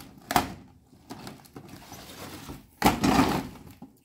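Paper bag and plastic packaging rustling and crinkling as a boxed set of Christmas baubles is pulled out of the bag by hand. A short knock comes just after the start, and the loudest rustle comes near the end.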